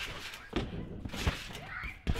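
Trampoline mat taking a person's bounces: two dull thumps about three quarters of a second apart as his feet land.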